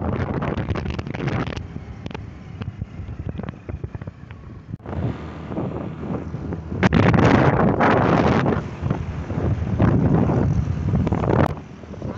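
Wind buffeting the microphone of a phone held by someone riding a moving motorbike or scooter, with road and vehicle noise underneath. The rush is quieter for a few seconds early on, then comes in loud gusts in the second half.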